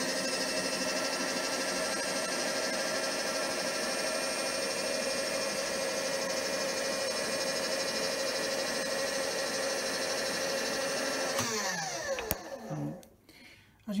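Milling machine table power feed motor traversing the table at a steady whine, then winding down with falling pitch about eleven and a half seconds in, followed by a single click.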